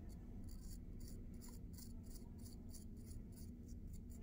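Metal needle tool scoring a firm clay patch: a faint quick run of short scratchy strokes, about three or four a second. The surface is being scratched up to prepare it for slip and joining.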